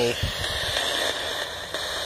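Steady hiss of radio static from a spirit-box ITC device scanning the radio band, with a soft low thump near the start.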